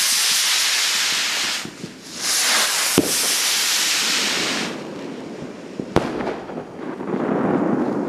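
New Year's Eve fireworks: two long hissing rushes of about two seconds each, with sharp bangs about three seconds in and again about six seconds in. A duller, lower rushing noise follows near the end.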